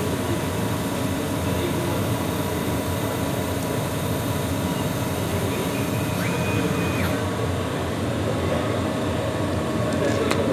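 CO2 laser cutting machine at work cutting a design out of MDF: a steady mechanical whir runs throughout. A thin, high tone sounds for under a second about six seconds in.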